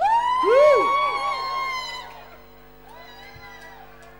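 A person's long, high whoop through a karaoke microphone and pub PA, with repeating echoes that die away, fading after about two seconds. A faint voice follows near the end.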